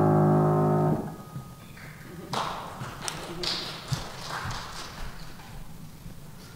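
Grand piano's final chord held, then cut off sharply about a second in. It is followed by quieter rustling and shuffling, with a single soft knock near the middle.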